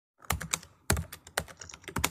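Keyboard typing: a quick, uneven run of sharp keystroke clicks, a few louder than the rest.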